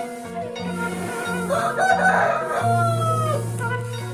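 A rooster crowing once, starting about a second and a half in and lasting about two seconds, its long final note falling away at the end. Background music plays underneath throughout.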